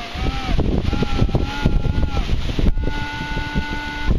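Minelab Explorer SE metal detector giving a wavering tone twice as the coil is swept back and forth over a buried target, then holding a steady tone for the last second or so as the target is pinpointed. Heavy wind rumble on the microphone.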